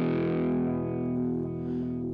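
Distorted electric guitar chord played through MainStage's British Metal pedalboard with the Modern Wah pedal switched on, ringing on and slowly fading as its treble falls away.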